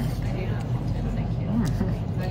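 Restaurant room noise: a steady low hum with faint background voices of other diners.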